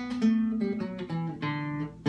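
Acoustic guitar played requinto-style: a quick run of single picked notes over lower held notes, the lead-in ornament into the next verse.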